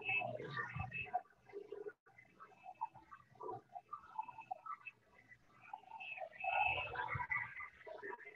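Handheld electric dryer blowing on wet watercolour paper to dry the wash; the sound comes through choppy and uneven rather than as a steady rush, cutting out briefly about two seconds in.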